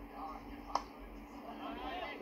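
Quiet cricket broadcast sound: faint voices over a steady low hum, with a single sharp knock about three-quarters of a second in.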